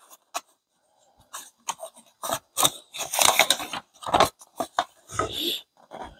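Paper rustling and crinkling as a folded instruction leaflet is handled and opened: a run of short, scraping rustles that starts about a second in.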